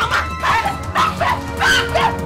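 A woman crying out in short, repeated high-pitched shrieks, several a second, over background music.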